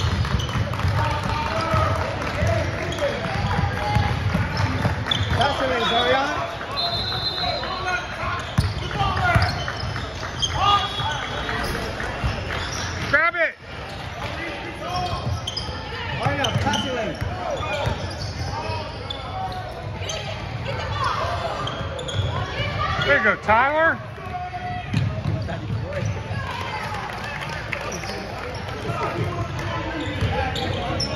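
A basketball being dribbled on a hardwood gym floor, with sneakers squeaking as players run and cut, under indistinct chatter from people in the gym.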